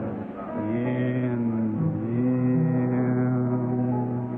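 Congregation singing a slow hymn chorus in long held notes, changing note about two seconds in. The recording sounds dull and muffled, like an old tape.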